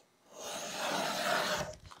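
Paper rubbing against stiff file-folder card: one smooth, moderate scrape lasting about a second and a half.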